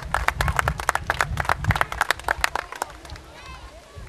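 A small group applauding with quick, scattered hand claps that die away about three seconds in.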